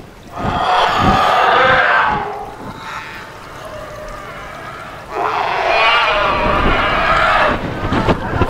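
Two long calls of pterosaurs, film creature sound effects, each lasting about two seconds with a wavering pitch. A quieter, lower call sounds between them.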